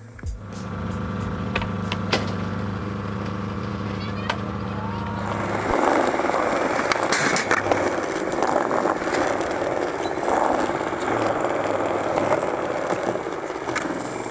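A steady low hum for about the first five seconds, then skateboard wheels rolling over concrete, with several sharp clacks of the board.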